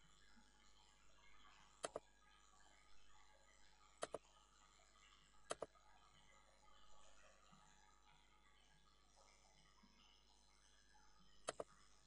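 Near silence broken by a few computer mouse clicks: single clicks about two and four seconds in, a double click about five and a half seconds in, and another double click near the end.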